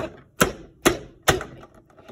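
Hard plastic toy pieces knocking together, about four sharp taps roughly half a second apart, as an action figure is knocked against a plastic playset in play.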